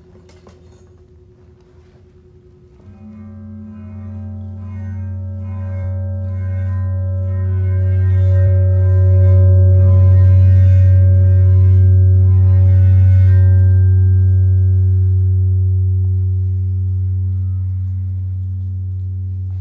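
Large sand-covered metal Chladni plate driven into vibration by a tone: a low steady hum with a stack of overtones and a higher ringing tone. It swells in about three seconds in, is loudest around the middle with a faint fizzing hiss over it, then eases a little.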